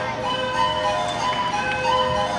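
An ensemble of small flutes playing long, steady notes at several pitches together.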